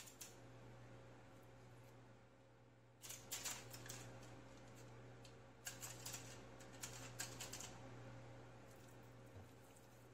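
Aluminium foil crinkling and crackling faintly as seasoned chicken pieces are pressed down onto it, in two spells of quick crisp crackles, a few seconds in and again past the middle. A low steady hum runs underneath.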